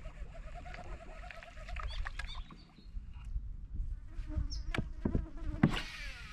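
A fly buzzing close by with a steady, slightly wavering hum that fades out about a second in. Then come faint scattered chirps and clicks, with a few sharper clicks near the end.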